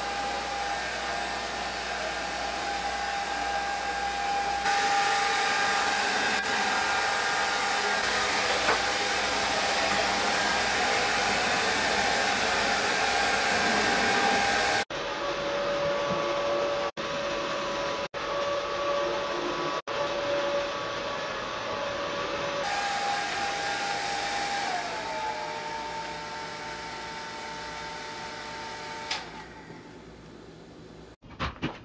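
Panasonic low-noise hair dryer running: a steady rush of air with a thin whine on top, broken by a few brief dropouts. Near the end the whine glides down in pitch and the sound falls away.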